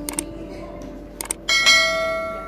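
Mouse-click sound effects and a bell notification chime from a subscribe-button animation, laid over electronic keyboard playing. A quick double click near the start and another just past a second in, then a bright bell ding at about a second and a half that rings on and fades.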